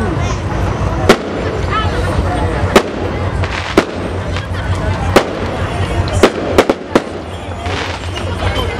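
Firecrackers going off in a series of about eight sharp, loud bangs at irregular intervals, several bunched together near the end, over crowd chatter.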